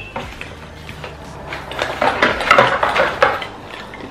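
Wrapped globe bulbs of a vanity light strip rustling in their packaging and clinking together as they are lifted out of a cardboard box. The clicks bunch up and are loudest in the second half.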